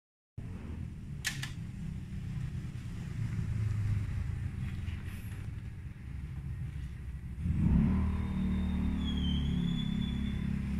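A vinyl record starting on a turntable played through a hi-fi with an RCA 12AU7 valve under test: a low rumble, two clicks about a second in as the stylus is set down, then music starts from the record at about seven and a half seconds.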